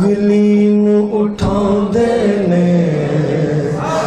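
A man singing a devotional naat into a microphone, holding long drawn-out notes that step down in pitch. A short sharp click comes about one and a half seconds in.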